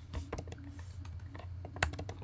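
Faint, irregular clicks of typing on a computer keyboard, a few close together near the end, over a low steady hum.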